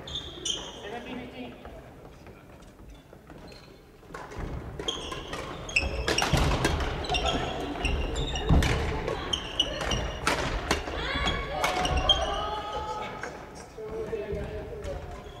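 Badminton rackets striking shuttlecocks, sharp cracks at irregular intervals, with court shoes squeaking on the wooden floor and players' voices echoing in a large hall; the play gets busier and louder from about four seconds in.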